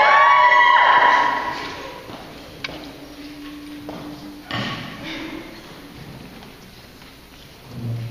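A cappella women's voices give the starting pitches. Each voice slides up into its note and enters after the one before, building a chord that is held and cuts off about a second in. The hall is then quieter, with a faint low held note and a soft thump near the end.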